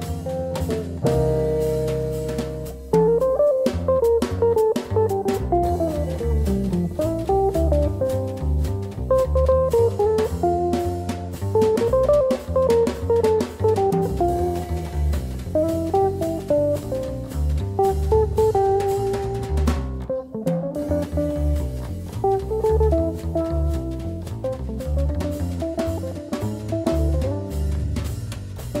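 Instrumental opening of an Italian swing song played by a small swing band on guitar, drum kit and double bass. A held chord gives way about three seconds in to a steady swing beat, with a short break just past twenty seconds.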